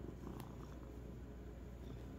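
Domestic cat purring, a soft, steady low rumble.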